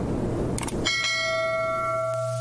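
Logo-intro sound effect: a noisy whoosh with a couple of clicks, then a bright bell-like chime a little under a second in that rings on steadily over a low hum.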